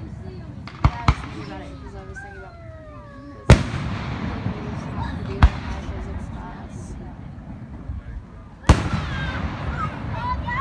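Aerial fireworks shells bursting with five sharp bangs. There is a close pair about a second in, the loudest bang a little after three seconds, a lighter one after five seconds, and another loud one near the end.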